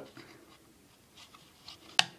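Faint rubbing and scratching of fingers on a compact eyeshadow palette case, ending in one sharp click as the lid catch pops open.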